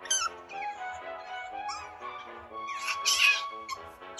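Asian small-clawed otter squeaking and chirping: quick high falling squeaks near the start, and a louder, harsher squeal about three seconds in, over background music.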